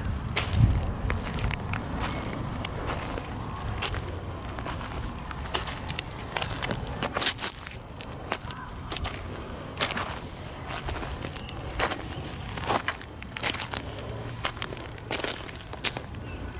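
Footsteps crunching on a beach of small rounded pebbles, the stones grinding and clattering underfoot at an uneven walking pace.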